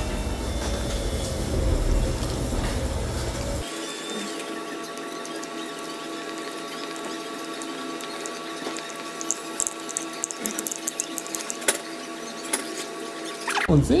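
Low rumbling noise for the first few seconds, then a steady tone of several pitches at once, held for about ten seconds as an added sound effect, with faint clicks near the end.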